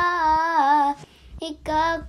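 Singing in a high voice: a long held note with vibrato that ends about a second in, followed by a short sung phrase.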